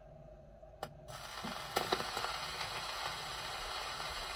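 HMV 130 record player's pickup being set down on a 78 rpm record. There is a sharp click just under a second in. Then the stylus meets the groove and a steady surface hiss begins, with a few crackles in the lead-in groove.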